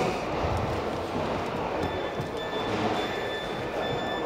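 Steady rumbling machinery noise of a car assembly hall, with a faint high tone coming and going.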